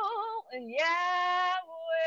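A woman singing a worship song solo over a video call, holding long notes with a wavering vibrato; the singing breaks off briefly twice before she takes up the next note.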